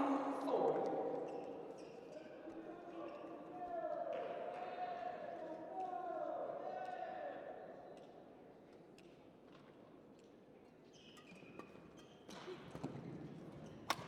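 A low hall murmur between badminton rallies, then from about three seconds before the end a few sharp racket strikes on the shuttlecock as the next rally gets going. The last strike is the loudest.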